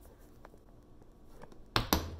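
Handling noise from a phone on a cheap bendable-leg tripod being repositioned: a couple of faint ticks, then two sharp knocks close together near the end.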